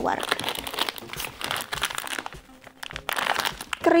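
Plastic food packaging crinkling and rustling as it is rummaged and lifted out of a cardboard box, in irregular crackles with a short lull a little past the middle.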